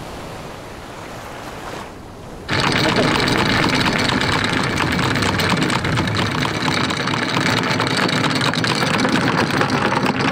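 Wind and small waves, then, about two and a half seconds in, a sudden switch to a much louder, steady rattle of anchor chain running out over the bow as the sailboat's anchor is dropped.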